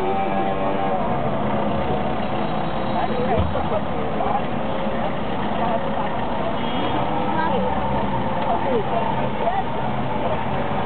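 Steady engine and road noise inside a Mercedes taxi moving slowly through city traffic, with voices talking throughout.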